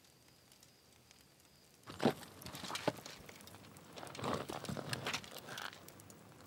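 Near silence for about two seconds, then soft, uneven rustling and scuffing of clothing and movement, with a few small ticks, as a man crouches down beside another.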